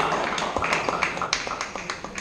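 Table tennis balls clicking, a quick irregular string of light taps on tables and bats, over a steady murmur in a reverberant sports hall.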